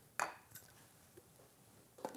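A brief soft handling noise from a camera lens being picked up and readied for mounting, with a faint tick or two, then near silence.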